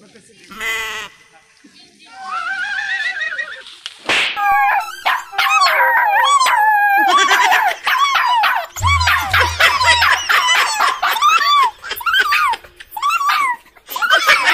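A short comic sound effect, then a rising-and-falling wail, then from about four seconds in a long run of rapid, high-pitched, dog-like yelping cries. Three low thuds sound near the middle.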